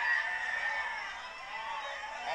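A long, high-pitched, drawn-out yell from a voice in the crowd. It is loudest at the start and trails off over about a second.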